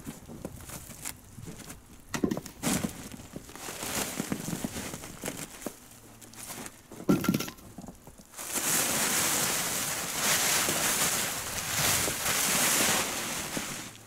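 Scattered scuffs and knocks as snow and boards are cleared off a plastic tarp, then, about eight seconds in, a steady rustling hiss as the tarp is dragged and pulled off the insulation.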